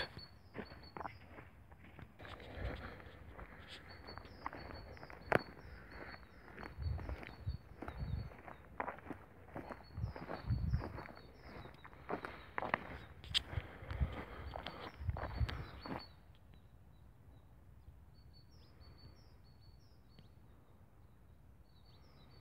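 Footsteps of a person walking on a dirt track and grass, irregular scuffs and thuds that stop about two-thirds of the way through. Faint, high bird chirps repeat throughout.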